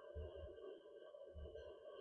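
Near silence: a faint steady hum of room tone, with two soft low thumps, one near the start and one about halfway through.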